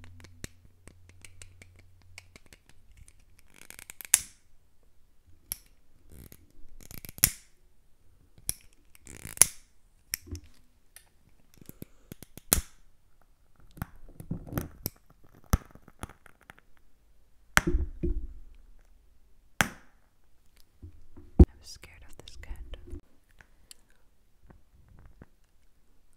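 Close-miked handling sounds of a plastic lighter and a glass jar candle: irregular sharp clicks and taps with a few short hissing bursts, as the lighter is flicked and the jar is handled.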